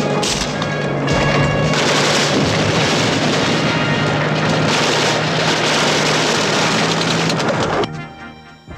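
Loud film battle sound effects: explosions and gunfire in a continuous din, with a low held music note underneath. The din cuts off just before the end.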